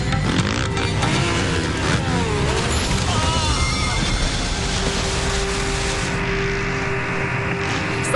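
Motocross dirt bike engine revving up and down as the bike takes a jump, then the bike crashing and tumbling into the dirt.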